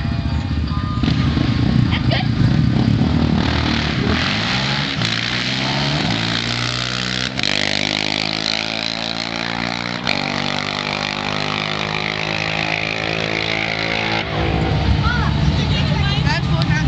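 2006 Yamaha Raptor 700 quad's single-cylinder engine running at the starting line, then launching and accelerating hard down the drag strip, its pitch climbing through each gear with two upshifts about three seconds apart. A rougher, deeper engine rumble comes back in near the end.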